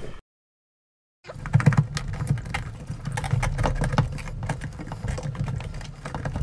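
Irregular clicking, knocking and rattling of plastic and sheet metal as an optical drive is worked loose by hand from a small desktop computer case. The sounds start after about a second of dead silence.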